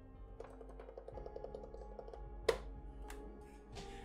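Soft sustained music notes with a few taps on the keys and pads of an Alesis MIDI keyboard controller; the sharpest tap comes about two and a half seconds in, with another shortly after.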